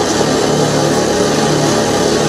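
Experimental noise music: a loud, steady, dense wash of layered tape sounds and drone run through effects pedals, with no pause.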